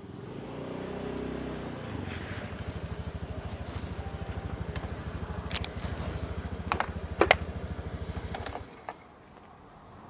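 Motor scooter engine running, rising over the first two seconds, then idling with a steady fast low pulse until it is switched off and cuts out abruptly near the end. A few sharp clicks come shortly before it stops.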